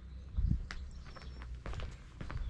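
Footsteps on a tarmac lane: a heavy thump about half a second in, then steps at an ordinary walking pace, over a low steady rumble.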